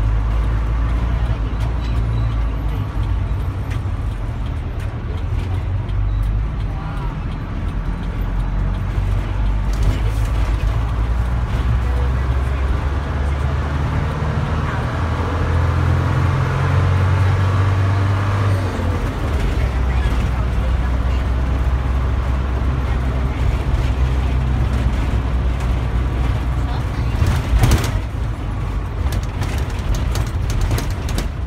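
Engine of a moving city bus heard from on board, a steady low drone that rises in pitch through the middle as the bus speeds up and falls back later, under road and traffic noise. A brief knock near the end.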